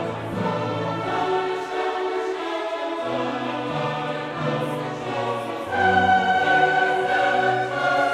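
Background music of slow, sustained choral and orchestral chords, growing louder with a high held note about six seconds in.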